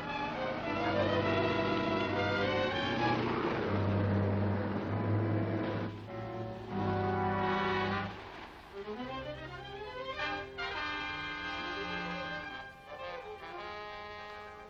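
Orchestral film-score music with brass and strings: loud held chords over a low sustained bass, then quieter, with a rising run of notes about nine seconds in.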